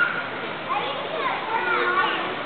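Young children's voices, several high calls overlapping, over a steady background hubbub of children playing.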